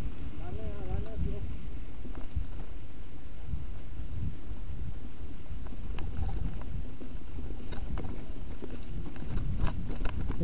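Wind buffeting the camera microphone over the rumble of a full-suspension mountain bike rolling fast down a dirt singletrack, with sharp clicks and rattles from the bike over bumps that grow more frequent in the second half. A brief wavering call sounds about half a second in.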